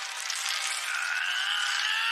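Film soundtrack: a high, smooth held tone that swells gently and bends downward near the end, with nothing low underneath.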